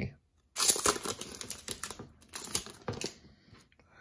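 Plastic foil wrapper of a hockey card pack being torn open and crinkled: a run of crackling and tearing that starts about half a second in and fades out after about three seconds.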